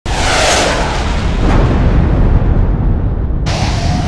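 Logo sting: a sudden deep boom with a whoosh that fades over the first second, then a low rumble under music, with a second whoosh near the end.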